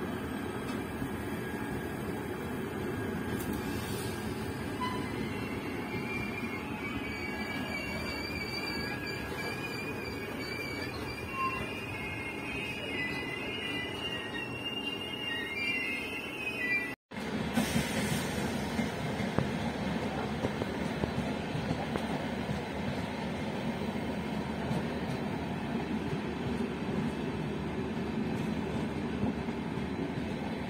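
Express passenger train running, heard from on board: a steady rumble of wheels on rails, with the wheels squealing in a wavering high tone for about ten seconds from about six seconds in. The sound cuts out for an instant at about seventeen seconds, then the rumble goes on.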